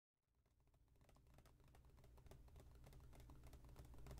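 Faint, irregular clicks of fingernails tapping and brushing on a paper map, growing louder as the sound fades in, over a low hum.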